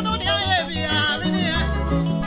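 Gospel song sung live into microphones by several singers over instrumental backing with a steady bass line.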